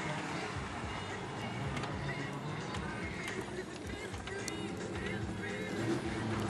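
Range Rover Classic's V8 engine running low and steady, heard from inside the cabin, with small clicks and rattles. Faint music and voices are underneath.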